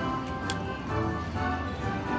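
Aristocrat Buffalo Gold slot machine playing its win-celebration music with ticking as the win meter counts up, and a sharp click about half a second in.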